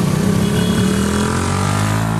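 Motorcycle engine running as it passes close by, its note falling slowly, over the sound of other vehicle engines.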